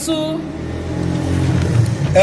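A low, steady engine hum, like a motor vehicle running nearby, growing a little louder toward the end.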